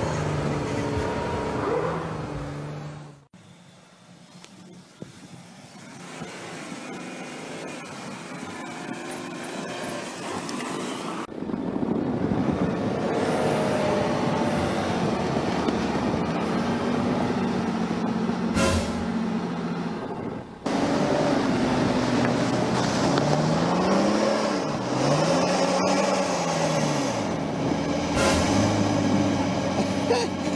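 SUV engines revving while pushing through deep snow, in several short clips with abrupt changes in sound. Near the end the engine note rises and falls again and again, as when revving against spinning wheels.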